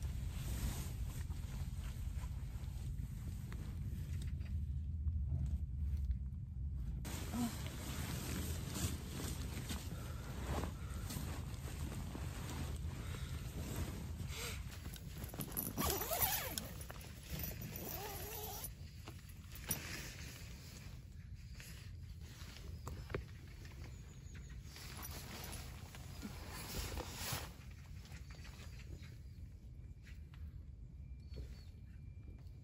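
Rustling of a down sleeping bag and tent fabric as a person stirs, then about halfway through a tent door zipper is pulled open, the loudest sound here. A low steady rumble runs underneath.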